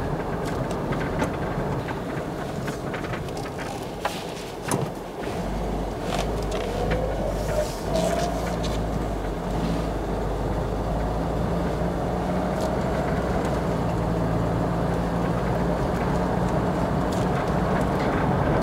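1982 Peugeot 505 GR Estate on the move: its carburetted petrol engine and automatic gearbox run steadily under road and tyre noise. A deeper rumble joins about five seconds in, and a rising note follows shortly after. A few light knocks come about four seconds in.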